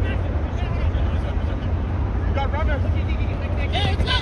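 Soccer players' brief shouts across the pitch, a couple of calls a little over two seconds in, over a steady low rumble.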